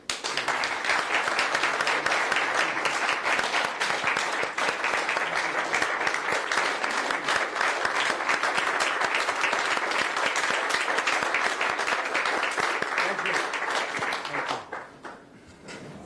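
A roomful of people applauding: dense, sustained clapping that starts at once and dies away about a second before the end.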